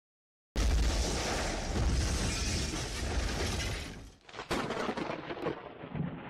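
A loud, deep rumbling noise with hiss, starting suddenly about half a second in and fading out near four seconds. A single sharp crack and fainter scattered noise follow.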